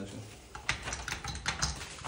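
A string of light, sharp clicks as a chuck is twisted and worked on the nose of a corded DeWalt drill, the fitting clicking as it seats.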